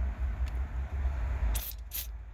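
Aerosol can of Blaster penetrating oil spraying into a drilled-out ignition lock cylinder. It gives two short hissing bursts near the end.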